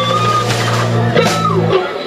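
Live rock band playing an instrumental jam passage: electric guitars and bass over drums.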